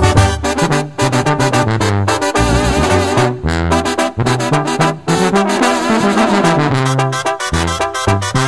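Instrumental break in Mexican regional music: a brass section of trombones and trumpets playing over a moving low bass line and steady drums.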